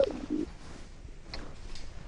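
A short low hum-like sound right at the start, with a weaker one just after, then faint background noise with a single faint tick.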